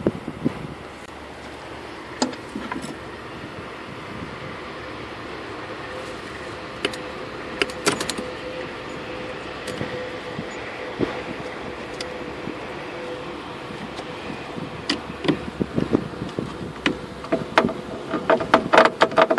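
Scattered small metallic clicks and scrapes of a battery cable clamp being handled onto a car battery terminal, turning into a quick run of clicks near the end as a screwdriver works the clamp, over a steady hum.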